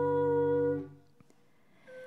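Sung liturgical music: a voice holds a long note with slight vibrato over sustained accompanying chords, and the phrase ends about a second in. A brief near-silent pause follows before the next phrase begins at the very end.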